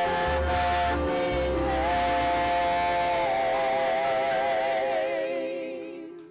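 Gospel worship music: voices and band holding a long final chord, the sung notes wavering with vibrato, then fading out near the end.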